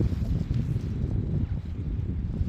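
Wind noise on the microphone: an uneven low rumble.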